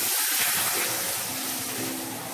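Grated tomato and onion masala sizzling in hot oil in a karai as it is stirred with a wooden spatula, the masala being fried down. The hiss swells in the first half-second and then eases slightly.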